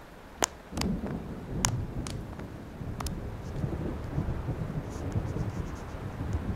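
Thunderstorm: a low rumble of thunder sets in about a second in and rolls on under the noise of rain, with a few sharp clicks in the first three seconds.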